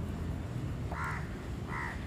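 Two short bird calls, about a second in and again near the end, over a steady low background hum.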